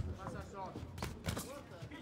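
Quiet boxing-arena sound during a bout: faint distant voices and a few soft knocks from gloved punches and footwork on the ring canvas.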